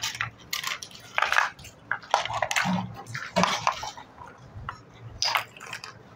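Large plastic toy building blocks clattering and knocking together in a string of irregular clicks as they are picked out of a pile and pressed onto one another.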